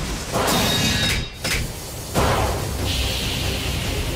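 Cartoon battle sound effects of two Beyblade spinning tops clashing in a stadium: a series of sudden heavy impacts, the loudest a little past halfway, over background music.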